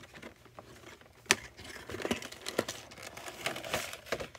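Handling of a cardboard figure box and its clear plastic blister tray as the box is opened and the tray slid out: crinkling plastic and rustling card, with a sharp click about a second in.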